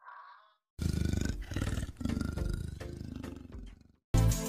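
A brief high tone, then a deep, rough animal call that pulses rapidly in several long phrases for about three seconds.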